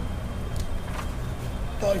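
Steady low rumble with a couple of faint ticks; a man's voice starts near the end.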